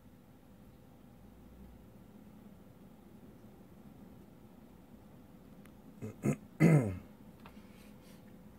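A man clearing his throat near the end: two short catches, then one louder throat-clear that drops in pitch, over a faint steady background hum.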